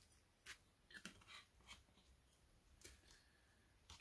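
Near silence: room tone with a few faint clicks and knocks of handling.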